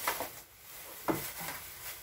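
Plastic cling wrap wound round the legs crinkling and rubbing in two short bursts, one at the start and one about a second in, as the wrapped body moves and sits down.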